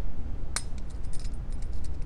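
Split ring pliers working a treble hook onto a heavy-duty split ring: light metallic clinks and ticks, with one sharp click about half a second in.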